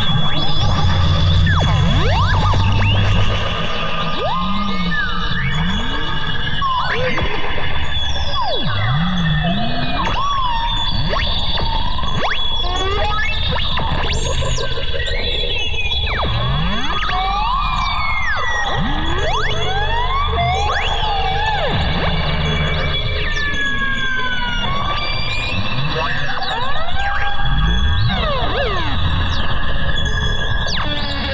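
A dense, eerie sound-design collage standing in for an anomalous tape recording: many overlapping squeals and whistles sliding up and down in pitch over a low drone and a steady high whine. The low drone is heaviest in the first few seconds.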